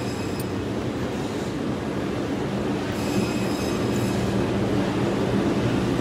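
Steady mechanical rumble with a low hum, growing slightly louder toward the end.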